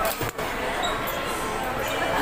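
Chatter and babble of a crowded restaurant dining room, with a brief dull thump and a short dip in sound just after the start.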